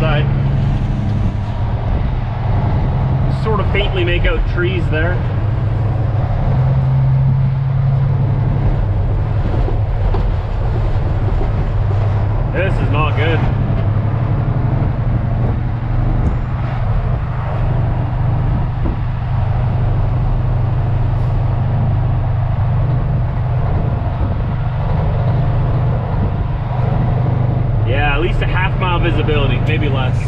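A semi-truck's diesel engine and road noise heard from inside the cab while driving: a steady low drone whose pitch shifts only slightly.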